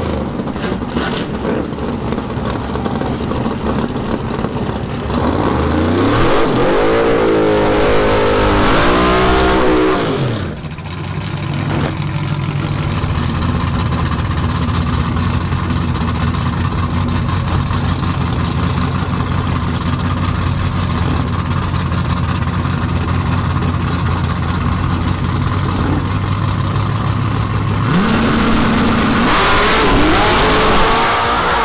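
Drag race cars in Fox-body Mustangs, their engines revving up and down, then holding a loud, steady low idle while staging. Near the end the engine note climbs sharply as the cars launch off the line.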